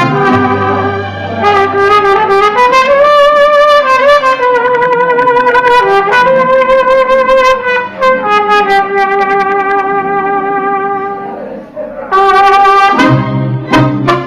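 Mariachi band playing an instrumental introduction: trumpets carry long held notes over violins. After a brief softening, the full band comes back in loudly about twelve seconds in with strummed guitars and bass.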